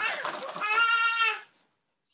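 A goat-like bleat: one drawn-out, wavering high cry lasting under a second, following the tail of a man's speech.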